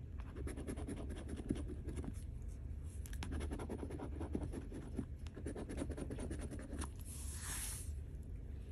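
A large metal coin scratching the silver coating off a paper scratch-off lottery ticket: rapid, rasping strokes one after another, with a short hiss near the end.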